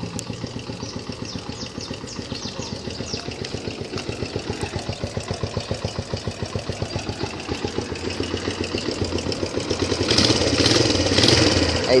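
Suzuki Yes 125's single-cylinder four-stroke engine idling with an even, steady pulse. It gets louder over the last two seconds.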